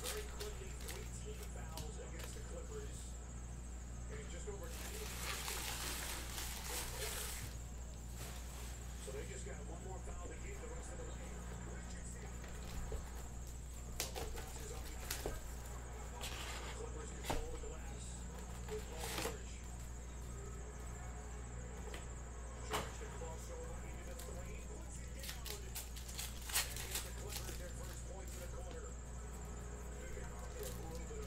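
Foil trading-card packs being torn open and handled: a crinkling tear about five seconds in, then scattered light clicks and taps of packs and cards, over a steady low hum.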